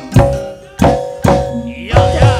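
Live dangdut koplo band playing an instrumental passage: about four loud, sharp hand-drum strokes over steady held melody notes.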